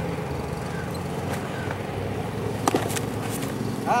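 A baseball popping into a catcher's mitt, two sharp snaps close together about two and three-quarter seconds in, over the steady low hum of a small groundskeeping tractor's engine.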